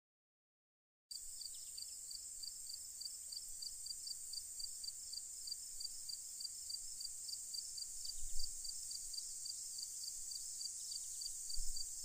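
Silence for about the first second, then a steady chorus of crickets: an even high insect hum with regular chirps, about four a second.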